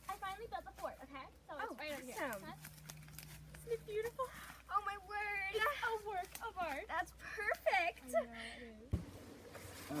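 Speech only: young girls' voices talking excitedly back and forth, with no words clear enough to make out.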